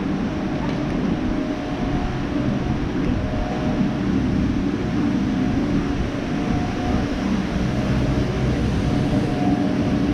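Steady low rumble of outdoor city noise, loud enough that the walker calls it noisy, with a faint hum coming and going over it.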